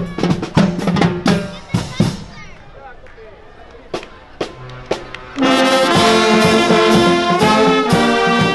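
Street marching band of saxophones and brass with drums. Drumming over a held low note gives way after about two seconds to a lull with only a few drum strokes. About five and a half seconds in, the full brass section comes in loudly, playing a tune.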